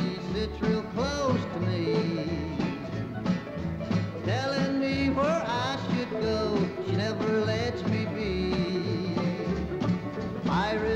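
Country song played by a bluegrass band: acoustic guitars, banjo, mandolin and upright bass. The bass pulses on a steady beat under a male lead vocal.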